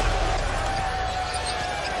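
Basketball arena game sound: crowd noise with on-court sounds, and a single steady tone held through it that stops just before the end.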